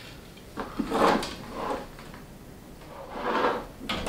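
Spinning rod and reel being handled while a tangle in the line is worked free: a few short rustling and knocking handling noises, the loudest about a second in and another near the end.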